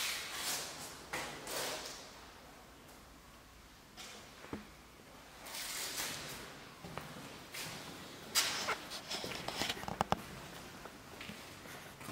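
Footsteps on a hard floor strewn with grit and debris, crunching unevenly, with a pause partway through and a few sharp clicks and knocks in the later part.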